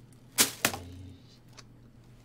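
Two sharp knocks about a quarter second apart, about half a second in, from objects handled on the shelves of an open refrigerator, over a low steady hum.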